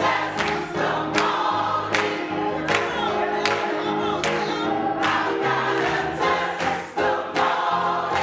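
Gospel choir singing with keyboard accompaniment, over a steady beat of sharp strokes roughly every three quarters of a second.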